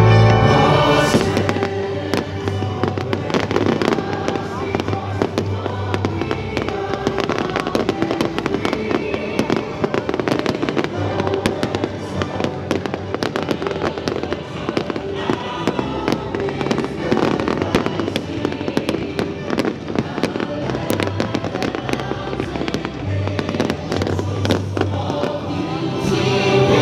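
Aerial fireworks bursting and crackling in rapid, continuous succession, over music playing from the show's loudspeakers.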